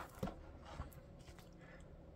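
Faint handling of a hardcover book: pages flipped with a soft paper rustle, and a light tap about a fifth of a second in.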